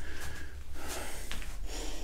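A man breathing: a few soft breaths in and out.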